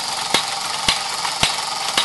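Fleischmann 1213 overtype model steam engine running steadily at reduced speed, driving a line shaft and belted toy workshop models, with a sharp click repeating about twice a second.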